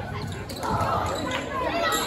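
Basketball bouncing on a hardwood gym floor during play, with spectators' voices in the gym.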